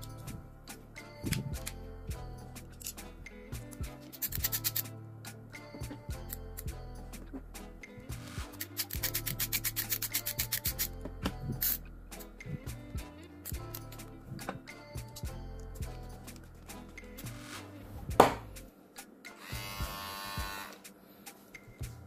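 Small hand screwdriver turning the screws that hold the trimmer's blade, heard as two quick runs of rapid ratchet-like clicking, with scattered clicks of metal and plastic parts being handled and one louder knock near the end. Background music plays underneath.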